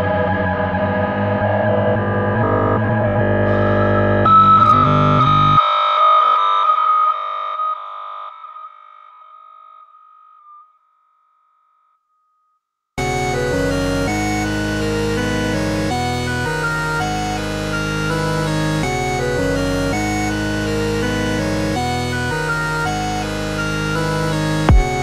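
Electronic music: a synth track ends, its bass cutting out and a lingering high synthesizer tone fading away, then about two seconds of silence before the next track starts abruptly with full synthesizers and bass.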